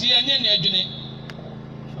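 A man's voice amplified through a loudspeaker system, loud and distorted, for about the first second. A pause follows in which only a steady low hum remains.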